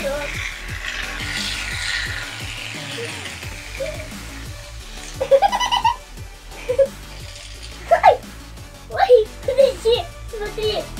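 Aerosol can of shaving foam spraying with a hiss for about three seconds, over background music with a steady beat; short bursts of laughter and voices follow in the second half.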